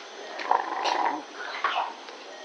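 Metal surgical instruments clicking a couple of times. About half a second in, a short mid-pitched sound of another kind lasts most of a second and is the loudest thing heard.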